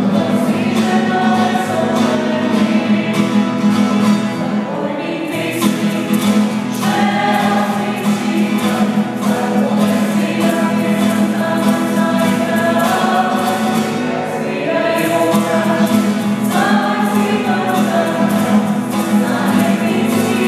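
A small group of voices singing a Slovenian song together, accompanied by a strummed acoustic guitar.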